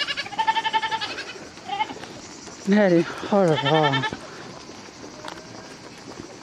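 Miniature goats bleating: a high, quavering bleat in the first second, a short one near two seconds in, and another about three and a half seconds in.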